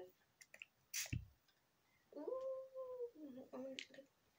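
One short spritz from a pump spray bottle of makeup setting spray about a second in, followed by a low thump. A long, steady voiced sound follows a second later.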